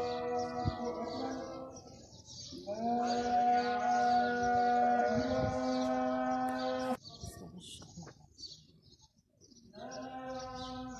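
A man's chanting voice holding long, drawn-out notes, with birds chirping all the while. The voice cuts off suddenly about seven seconds in, leaving only the chirps, and comes back at the very end.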